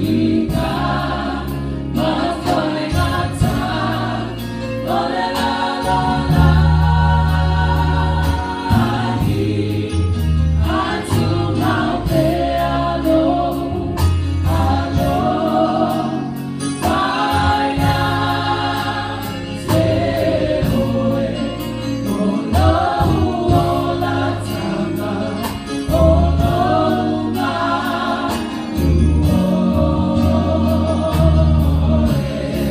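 Church choir of mixed voices singing a gospel song, accompanied by an electric keyboard holding sustained bass notes.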